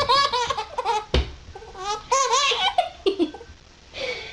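A baby laughing in repeated high-pitched bursts, one at the start and another about two seconds in, tailing off quieter near the end.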